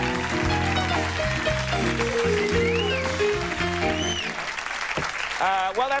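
Television house band playing, led by keyboard over a bass line, with studio audience applause. The band stops about four seconds in.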